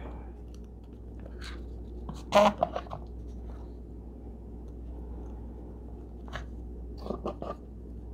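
Scattered short crinkles and rustles of packaging being handled as a small jewelry box is pulled out, the loudest about two seconds in, over a steady low hum.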